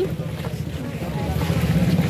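A motor engine idling with a steady low hum.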